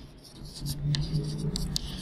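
Chalk writing on a chalkboard: a run of short scratchy strokes and taps as words are written. A low steady hum sits underneath from about half a second in.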